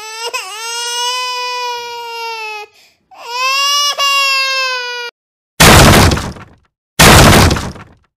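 Two long, high whining cries, each held at a steady pitch for about two seconds, followed by two loud cracking, breaking sound effects of about a second each in the last third, as a knife cuts through food on a wooden board.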